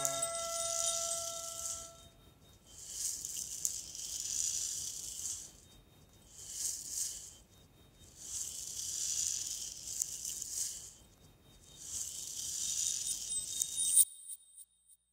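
The last keyboard notes ring out and fade, then a rattle-type hand percussion plays in slow, hissing swells, about five of them, each a second or two long with short gaps between. A small bright ding closes the track right at the end.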